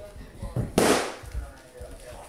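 A toy sword whacking a pillow held up as a shield in a mock sword fight: one loud, sharp hit about a second in, among a few soft low thumps.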